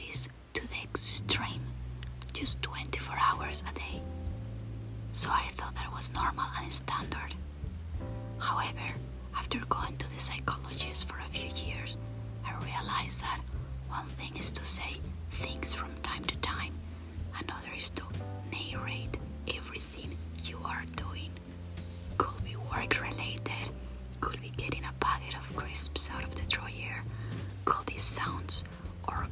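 A felt-tip marker scratching across paper in short, irregular strokes as a page is coloured in, over soft background music with low held notes that change every second or two.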